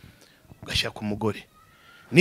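A man's voice in a pause between phrases: two short vocal sounds about half a second apart, then a faint thin steady tone near the end.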